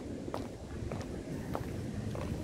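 A guardsman's boots striking stone paving in a measured marching step: three sharp heel strikes about 0.6 s apart over a low background rumble.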